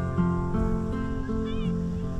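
Background music of strummed acoustic guitar, with a brief high rising-and-falling call about one and a half seconds in.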